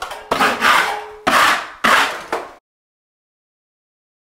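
Drywall trowel scraping joint compound in three long rasping strokes, with a short squeak about a second in. The sound cuts off abruptly about two and a half seconds in.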